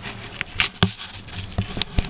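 Several light, irregularly spaced knocks and scuffs from someone moving about on an asphalt-shingle roof with the camera in hand.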